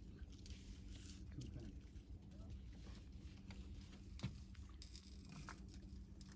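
Near silence: a faint steady low hum with scattered light clicks and taps, and one sharper tick about four seconds in.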